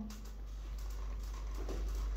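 Faint rustling and handling as a phone is slid into a fabric pocket of a hanging organizer, a few soft touches near the end, over a low steady hum.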